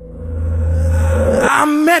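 Intro of an a cappella gospel song: a low drone under a rising swell that builds for about a second and a half. Then layered voices come in singing in close harmony.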